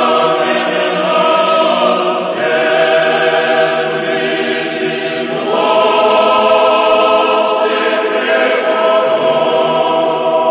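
Background choral music: a choir singing slow, sustained chant-like chords, moving to a new chord every few seconds.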